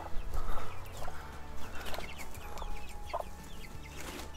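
A brood of young chicks peeping, many short high peeps throughout, with a mother hen giving a few clucks.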